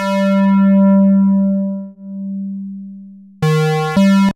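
Raw square-wave synth notes from the Syntronik 'Bully II Raw Sqrs Light' preset, a sampled Sequential Pro-One: one long held note that slowly fades away, then two short notes near the end, the first lower and the second back up at the first pitch.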